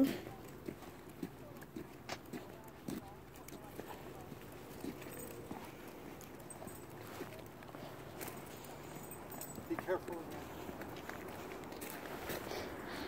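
Faint footsteps on an asphalt road: irregular soft taps and scuffs of people walking.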